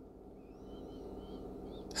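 Quiet room with a low steady hum, and faint, thin wavering chirps like a distant bird's that start shortly in and fade out near the end.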